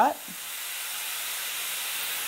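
Steam wand on a La Marzocco Strada AV espresso machine hissing steadily, the hiss swelling over the first second as the valve opens. The wand's valve is opened by an electronic actuator rather than directly by the control, which gives precise control over the steam.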